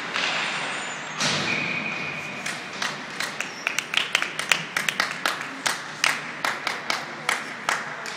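Rink crowd noise, then a nearby spectator clapping quick, sharp claps, about four a second, from a little past two seconds in to the end. A short high whistle sounds about a second and a half in.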